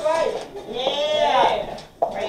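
A raised voice calling out in drawn-out exclamations that rise and fall in pitch, one at the start and a longer one around the middle.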